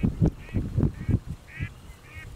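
Waterfowl calling in about four short calls spaced roughly half a second apart. Over them come irregular low thumps, which are the loudest thing heard.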